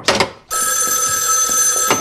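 A short sharp clatter, then an old rotary-dial telephone's bell ringing: one steady ring of about a second and a half that cuts off suddenly near the end.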